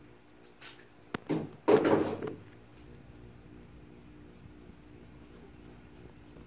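An accessory mount's track adapter being slid along a kayak's accessory track rail: a few light clicks, then one short scraping slide of about half a second, about two seconds in.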